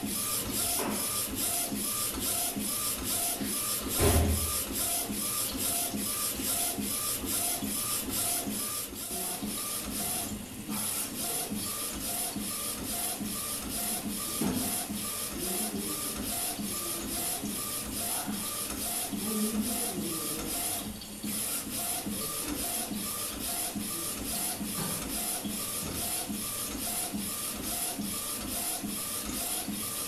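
A4 UV flatbed inkjet printer running a print job, its print-head carriage shuttling back and forth in a fast, even, repeating rhythm. There is one loud thump about four seconds in.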